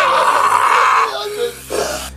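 A voice giving a strained, raspy cry for about a second, then fading: a gagging protest with soap being forced into the mouth.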